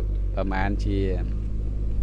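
Steady low drone of a loader tractor's diesel engine running on earthworks, under a man's speech that stops a little over a second in.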